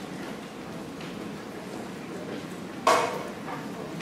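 Low murmur and shuffling of a seated orchestra and audience in a school auditorium, with one sharp knock about three seconds in.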